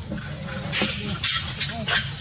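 Long-tailed macaques calling, with several short, harsh calls about three-quarters of a second in, around one second and near the end.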